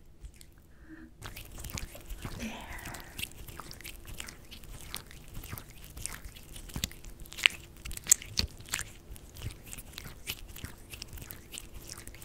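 Hands rubbing and massaging with lotion close to the microphone, making dense wet crackling and sharp clicks that start about a second in.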